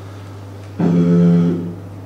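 A man's voice into a microphone holding one drawn-out hesitation sound on a single steady pitch for about a second, over a steady low electrical hum.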